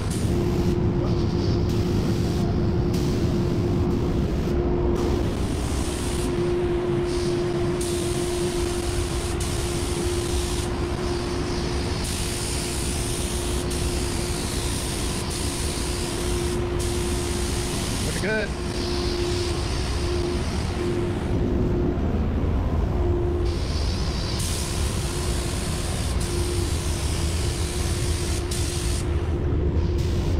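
Gravity-feed spray gun on compressed air hissing in repeated bursts as the trigger is pulled and released, laying paint onto a fibreglass body. A steady hum and low rumble run underneath.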